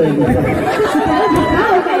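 Several voices talking over one another, amplified through stage loudspeakers.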